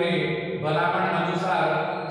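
Speech only: a man reading aloud from a textbook in Gujarati, in long, evenly pitched phrases.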